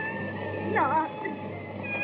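A woman's short, falling cry about a second in, over held notes of background film music.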